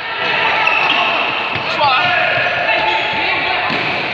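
A handball bouncing on a sports-hall floor as it is dribbled, several thuds in the second half, echoing in the hall.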